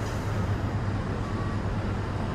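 Steady low rumble with a constant hum.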